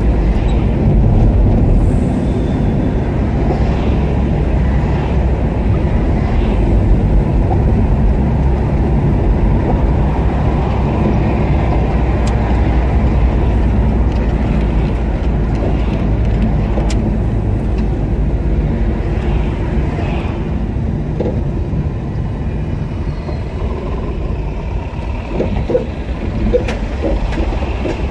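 Car driving slowly in city traffic: a steady rumble of engine and road noise.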